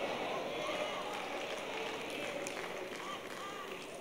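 A quiet pause in the preaching: the room tone of a church sanctuary with a few faint voices from the congregation.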